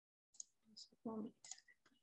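A brief, faint murmur from a person's voice, with a few short clicks around it, heard over a video-call microphone.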